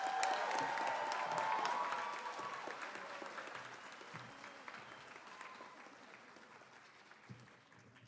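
Audience applauding in an auditorium, with a few cheers in the first couple of seconds, the clapping loudest at the start and fading away over several seconds.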